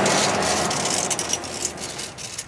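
A car driving past on the road, its rushing noise slowly fading away.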